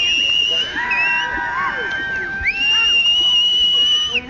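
People whistling shrilly at a trotting Welsh Section D stallion: two long, steady high notes with a short break between them, and lower held calls joining in the middle, the usual ringside din to urge a cob on in the show ring.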